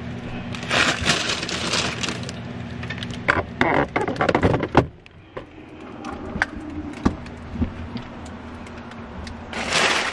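Old window tint film crackling and crinkling as it is pulled from a car's rear window and handled. A steady low hum runs underneath and stops about halfway through.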